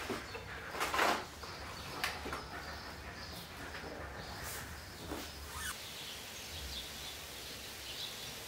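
Room ambience: a low steady hum with scattered small clicks and rustles, the loudest a brief rustle about a second in.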